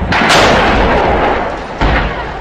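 A heavy weapon fires close by: a sudden loud blast whose rushing roar fades over about a second and a half, then a second sharp bang near the end.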